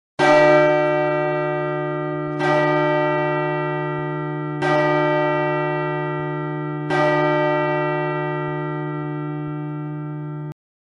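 A bell struck four times, about two seconds apart, each strike ringing on with a steady hum and slowly fading under the next. It signals the start of worship.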